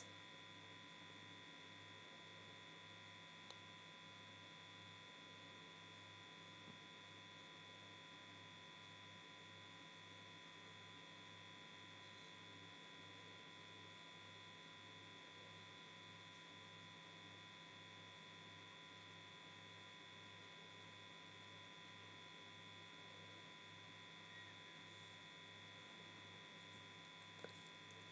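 Near silence: a faint, steady electrical hum and buzz, with a couple of tiny ticks.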